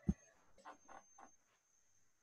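Handling noise picked up by a video-call microphone: one dull thump just after the start, then three quick soft clicks, over a faint steady high whine.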